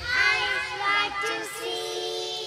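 A small group of young girls singing together into microphones: a few quick sung syllables, then long held notes through the second half.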